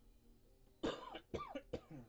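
A person coughing three times in quick succession, starting a little under a second in.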